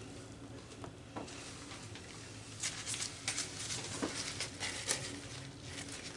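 Faint patter and scattered light ticks of paint flung off a canvas spinning on a paint-pouring spinner, with more ticks in the middle of the spin.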